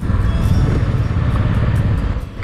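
Royal Enfield motorcycle engine running under way, a low pulsing rumble mixed with wind rush on the on-board microphone. It starts suddenly at a cut.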